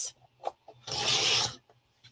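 Fiskars sliding paper trimmer's blade carriage pushed along its rail in one stroke, a short rasping slice through cardstock about a second in, after a couple of small clicks.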